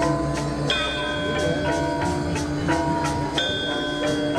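Balinese gamelan playing: struck bronze metallophones ringing in a steady, repeating pattern over a pulsing low tone.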